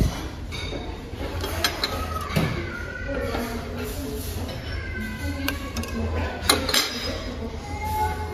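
Soft background music and voices in a dining room, with a few clinks of metal serving tongs against a stainless-steel chafing dish and plates. The sharpest clink comes about six and a half seconds in.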